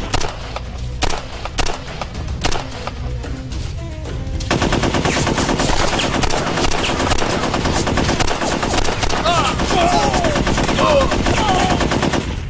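Rapid automatic gunfire, several weapons firing in long runs. It is lighter for the first few seconds, then heavier and nearly continuous from about four and a half seconds in.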